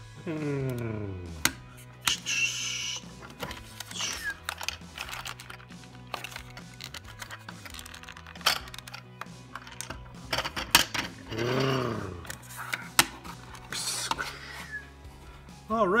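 Hard plastic parts of a Hot Wheels Monster Jam Travel Treads hauler toy clicking and snapping as the trailer is unfolded into a track. Background music plays throughout.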